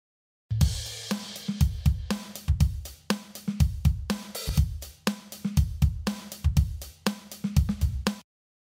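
Programmed rock drum pattern from a Boss RC-10R rhythm loop station, with kick, snare, hi-hat and cymbal, started by a footswitch press. It comes in about half a second in and keeps a steady beat with no other instruments.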